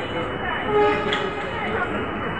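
Busy railway station ambience: many voices in the crowd and train noise, with a brief steady tone about a second in.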